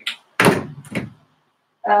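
Two sudden knocks, a leg striking the edge of a table, followed near the end by a short pained vocal 'uh'.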